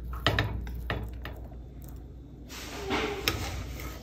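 A metal spoon scooping cooked rice from a steel pot, with a few light clicks and knocks of metal against the pot.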